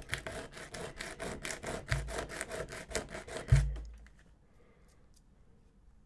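A small plastic model part rubbed back and forth on sandpaper in quick scraping strokes, smoothing its edges down by hand. Two dull thumps come near the middle, the second the loudest, and the sanding stops after about four seconds.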